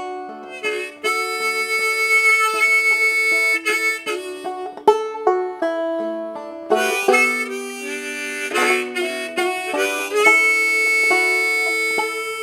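Harmonica in a neck rack playing a melody over a Whyte Laydie banjo played clawhammer style, with long held harmonica notes near the start and again near the end.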